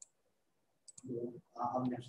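A man's voice over a video call: silent at first, then a couple of faint clicks and a short run of indistinct speech sounds in the second half.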